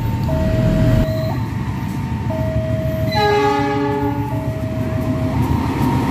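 Level-crossing warning alarm alternating between two tones about once a second, over the low rumble of an approaching CC206 diesel-electric locomotive. About three seconds in, the locomotive sounds its horn, a multi-tone chord held for about a second.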